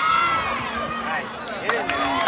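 A football crowd and sideline players shouting and cheering with many overlapping voices during an extra-point attempt.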